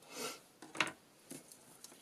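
Paper cards rubbing and shifting under hands, then a sharp click of small craft scissors just under a second in, followed by a lighter tap.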